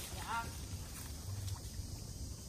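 A short voiced "ah" just after a swig of coconut water, then faint background with a low steady rumble.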